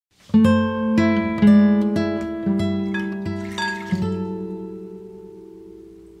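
Background music: a guitar picking single notes, about two a second, each ringing on. The last note fades out slowly over the final two seconds.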